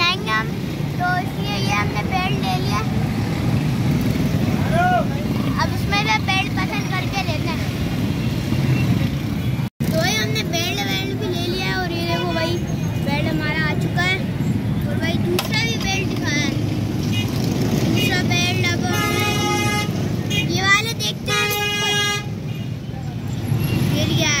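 Background chatter of many voices over street traffic noise, with a vehicle horn sounding twice, each for about a second, near the end. The sound cuts out briefly about ten seconds in.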